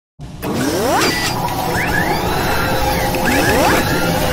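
Sound design for an animated news-channel intro: a mechanical whirring and ratcheting bed with rising whooshing sweeps, starting abruptly just after the opening, with sweeps about a second in and again near the end.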